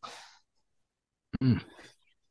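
A man's speech trailing off into a breathy exhale that fades within half a second, then dead silence for about a second, then a man starts speaking again near the end.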